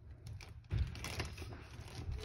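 Handling noise: light clicks and rubbing, with a low bump just under a second in.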